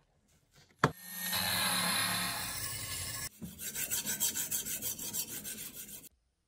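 A sharp hit, then a long rasping scrape, then quick back-and-forth rasping strokes, about five a second: a knife blade being worked over a sharpening stone.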